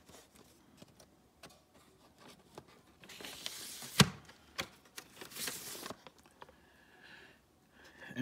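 Vinyl LP in a paper inner sleeve being handled and slid into a card jacket: paper and card rustling and scraping, with light clicks and one sharp tap about halfway through.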